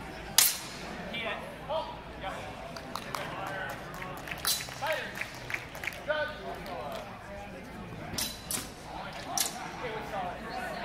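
Sharp crack of a longsword strike about half a second in, the loudest sound, followed by several more sharp clacks and faint metallic pings scattered later, over voices of people in the hall.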